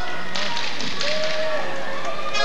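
Ice-arena crowd noise: clapping and a mix of voices from the stands, with one voice held for a moment near the middle.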